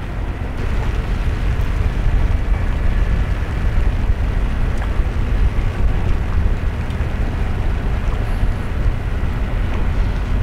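Steady low rumble with a hiss above it, typical of wind and rain noise on the microphone. No single event stands out.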